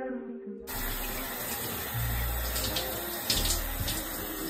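Shower spray running hard over hands and a mesh shower puff: a steady hiss of falling water that starts abruptly about half a second in.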